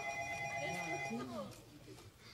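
A telephone ringing with a steady electronic ring that stops a little over a second in.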